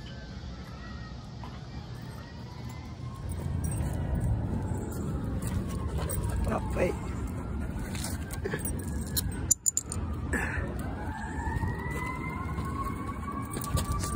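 A siren wailing, rising and falling in pitch, over a steady low rumble of street noise. There is a brief knock about two thirds of the way through.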